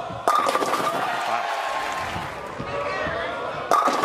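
A bowling ball crashing into the pins: a sudden clatter about a quarter second in, and again near the end, with voices rising after each crash.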